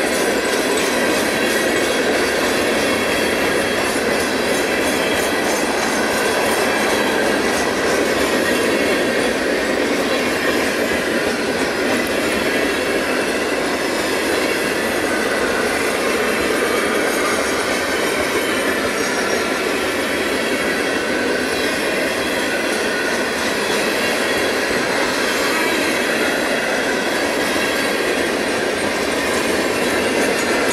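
A long freight train of empty steel hopper cars rolling past, a steady, loud rumble and rattle of wheels on rail, with a thin high wheel squeal running underneath.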